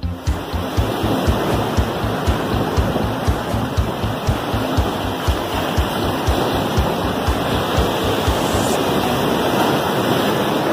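Waves breaking against a rocky shore: a steady rush of surf. Underneath runs background music with a fast low beat, which stops near the end.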